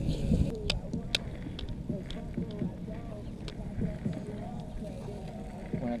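Low background voices talking, with a few sharp clicks in the first second or two.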